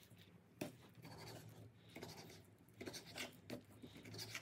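Kitchen knife slicing raw chicken breast on a wooden cutting board: several faint scraping and tapping strokes of the blade, a second or so apart.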